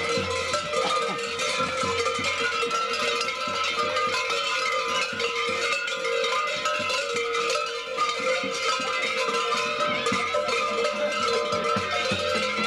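Many large bells worn on the belts of Surva mummers (survakari) clanging continuously and densely as the costumed group moves and dances.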